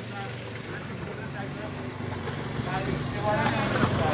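An engine running steadily, growing louder toward the end, with faint voices talking over it.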